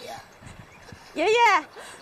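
A young woman's voice calling out "Grandpa" once, about a second in, with a rising then falling pitch; before it only a low background.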